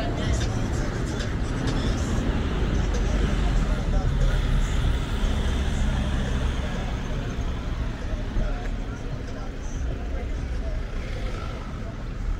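City street traffic: vehicles passing with a steady low rumble that swells to its loudest about four seconds in, then eases, with people's voices mixed in.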